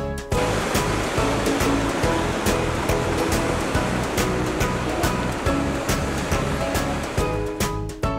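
Background music with a steady beat, with the sound of ocean waves washing over it from just after the start until shortly before the end.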